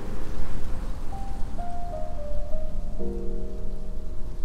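Solo piano playing a slow arrangement of a Vocaloid pop song. A held chord fades, a short single-note melody follows about a second in, and a new chord is struck near the end, all over a steady background hiss.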